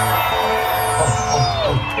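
Loud live concert music over a PA: a track with a heavy, steady bass note and held tones, some of them gliding down in pitch.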